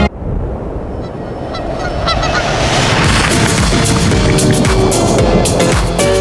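Honking, bird-like calls over a rough wash of noise that swells, with beat-driven music coming in about halfway through.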